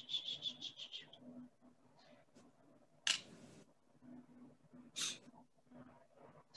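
Medium flat paintbrush tapping acrylic paint onto a canvas: a quick run of about eight dabs in the first second, then two short brushy rustles a few seconds in.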